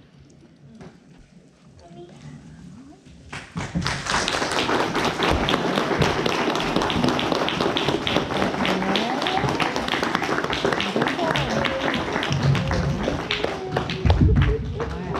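Audience applauding in a church hall, starting after about three seconds of near quiet, with voices mixed into the clapping.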